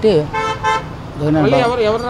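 Vehicle horn giving two short toots in quick succession about half a second in.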